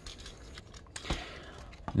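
Small plastic clicks and handling noise from the parts of a plastic Transformers action figure being moved and tabbed together by hand; a few faint clicks, one about a second in and one near the end.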